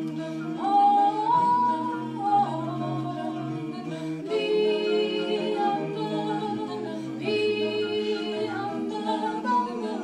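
Mixed five-voice a cappella group singing close-harmony chords without instruments. The held chords shift together twice, and a high voice slides up above the others about a second in.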